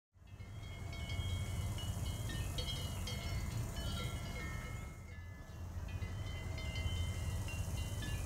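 Several cowbells ringing irregularly, their clangs at different pitches overlapping, over a steady low rumble.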